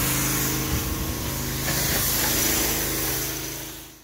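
Small petrol pressure washer engine running steadily, with a high hiss over it, fading out near the end.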